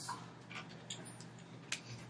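Quiet room tone with a few faint, irregular ticks or clicks.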